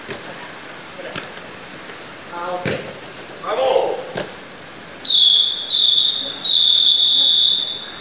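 A referee's whistle blown three times, two short blasts and then a longer one, the usual signal that a futsal game is over. Before it, players shout and there are a couple of thumps of a ball being kicked.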